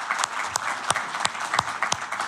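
Audience applauding, with sharp single claps standing out above the crowd's clapping, several a second, from a man clapping close to the microphone.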